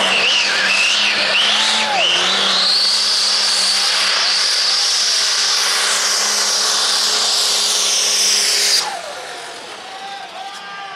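Diesel pickup truck at full throttle pulling a weight-transfer sled. The engine is held at high, steady revs under load, with a loud high turbo whistle that climbs about two seconds in and then holds. Near the end the engine noise drops off suddenly.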